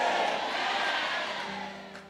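Congregation shouting and cheering in response, loudest at the start and fading away over about two seconds, over soft background music with held tones.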